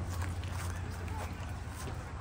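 Outdoor ambience: a steady low rumble with faint scattered clicks and faint distant voices.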